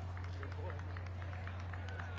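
Outdoor ringside ambience: a steady low hum under indistinct background crowd voices, with scattered short ticks.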